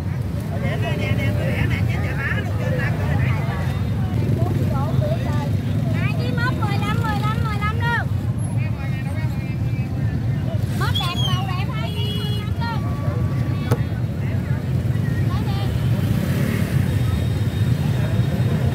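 Busy open-air produce market ambience: scattered voices of vendors and shoppers over a steady low rumble of engines.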